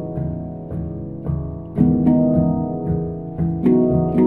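An ensemble of handpans (tuned steel hand drums) playing together in harmony: notes struck by hand in a steady rhythm, each ringing on and overlapping the next, with stronger accented strikes a little under two seconds in and near the end.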